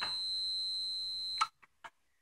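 A steady, high-pitched electronic beep lasting about a second and a half that cuts off suddenly, followed by a few faint clicks.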